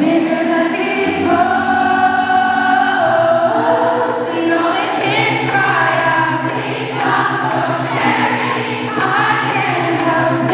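Live pop song in a concert hall: a woman singing into a microphone over a synth backing with a sustained low bass line that shifts note every second or two.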